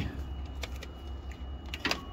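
Light clicks and rattles from handling a clamp meter and its test leads, with one sharper click just before the end, over a steady low rumble.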